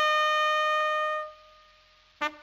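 Brass fanfare of a radio programme's opening jingle: one long held note that fades away about a second and a half in.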